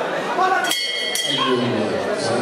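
Metal ring bell struck twice in quick succession, about three-quarters of a second in, ringing briefly and signalling the start of a round, over the chatter of the crowd.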